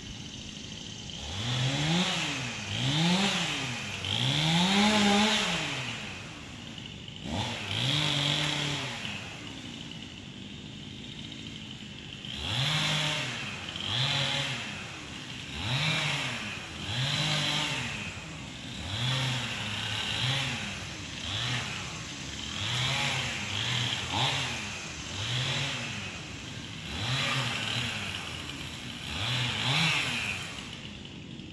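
A small engine revved over and over, its pitch climbing and dropping back about once a second, with a lull of a few seconds near the middle.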